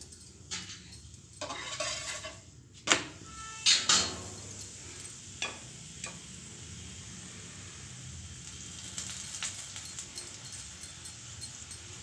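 Oiled spinach paratha sizzling on a hot tawa. A steel spoon knocks and scrapes against the griddle several times in the first few seconds, then a faint, steady sizzle carries on.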